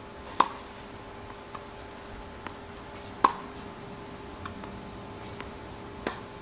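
Tennis racket striking the ball twice, about three seconds apart, each a sharp pop with a brief ring, with a few fainter ticks between. The coach treats the sound of these strikes as the sign of clean, fast racket-head contact on the groundstroke.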